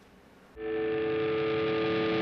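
Closing theme music comes in about half a second in with a single held, sustained chord.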